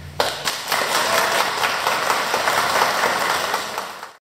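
Audience applauding, starting a moment in and fading out near the end.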